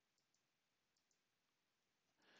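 Near silence, with a few very faint, short clicks in the first half.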